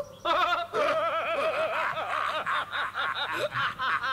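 Cartoon characters laughing loudly on the soundtrack, a chorus of voices with a wobbling, repeated 'ha-ha' pitch.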